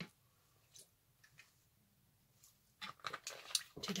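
A person drinking from a plastic bottle: a few faint swallows, then a quick run of small clicks, smacks and crackles near the end as the bottle comes away from the mouth.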